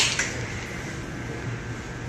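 Steady room noise, an even hiss with no distinct events, like a fan or air conditioning running.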